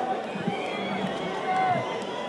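Concert audience between songs: many voices talking and calling out at once.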